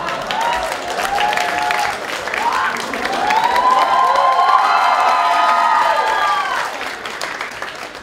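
Audience applauding, with voices laughing and calling out over the clapping after a stand-up joke. It swells in the middle and dies down near the end.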